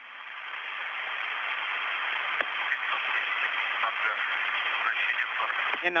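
Radio hiss on the Soyuz air-to-ground communications channel, fading in over the first second and then holding steady. A short burst of voice breaks in at the very end.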